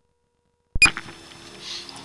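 A sharp click and a brief, high electronic beep about three-quarters of a second in, as the sewer inspection camera's recording starts up again, then a faint steady electrical hum with light background noise.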